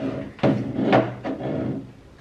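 A cut-glass bowl handled on a tabletop: two knocks of the bowl against the table, about half a second and about a second in.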